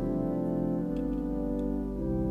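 Instrumental keyboard music for the offertory at Mass: held chords that shift a little under a second in and again near the end.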